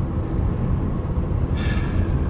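Steady low rumble of a car heard from inside its cabin, with a short hiss near the end.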